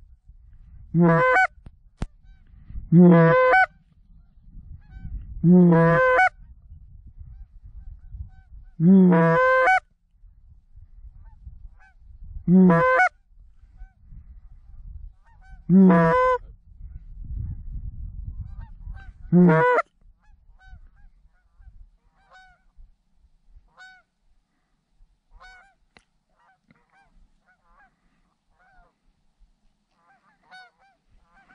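A goose call blown close by in loud sequences of honks and clucks, seven runs spaced about three seconds apart, over a low rumble. For the last third only faint honking from a distant flock of geese is heard.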